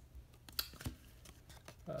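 Glossy cardboard trading cards sliding and rubbing against each other as a stack is flipped through by hand, a few short rustles grouped around half a second in.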